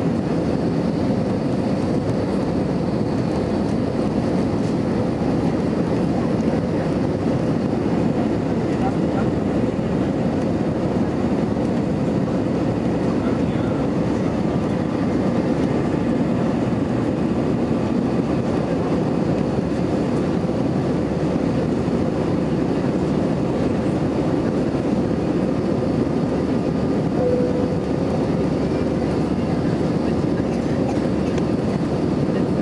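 Steady cabin noise inside an Airbus A320-214 climbing out, heard from a window seat over the wing: the rush of airflow and the hum of its CFM56-5B engines, with a faint steady tone.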